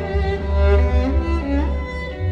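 A violin concerto, solo violin over orchestra with strong low strings, played through Magico A3 floor-standing speakers driven by an Accuphase E-700 Class A integrated amplifier and picked up by a microphone in the listening room. Sustained string notes, with a melodic line sliding upward near the end.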